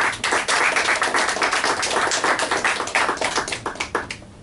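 Small audience applauding, the clapping dying away near the end.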